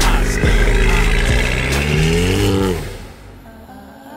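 A car engine revving: its pitch climbs for about a second, then falls away and cuts off about three seconds in.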